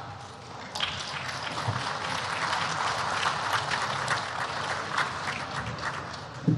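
A large seated audience of parliament members applauding, many hands clapping together, beginning about a second in.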